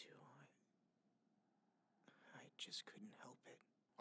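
Near silence, with faint whispered speech from about halfway through.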